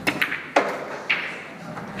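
Snooker shot: the cue tip striking the cue ball, and then balls clicking together on the table. A few light clicks at the start, a sharp click about half a second in, and a higher, ringing click about a second in.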